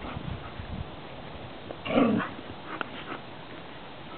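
Two Silken Windhounds play-fighting, with low thuds at the start, then one short, loud vocal outburst from a dog about halfway through, followed by a few light ticks.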